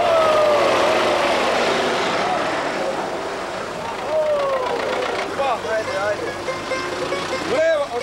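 Farm tractor engines running as they pass, with men's voices shouting and calling out over the engine noise.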